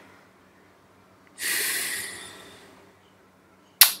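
A man's single audible breath about a second and a half in, lasting about a second and fading, in an otherwise quiet pause; a short mouth sound near the end as he starts to speak again.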